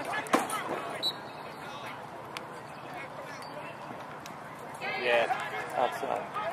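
Voices calling out across a lacrosse game, heard at the start and again about five seconds in, with a quieter stretch between. A few sharp clacks are heard in the first half second, and one faint one near the middle.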